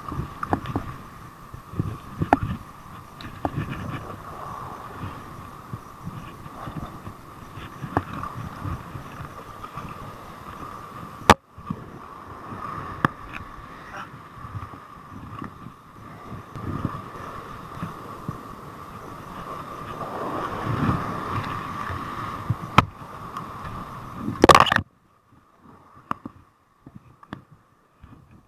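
Wind buffeting the microphone over surf washing across sea rocks, with irregular knocks and thumps from handling. The sound cuts off abruptly near the end.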